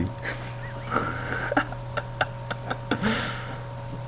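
A run of about six sharp clicks a few tenths of a second apart, from clicking at a computer, over a steady electrical hum. Near the end comes a short breathy exhale through the nose.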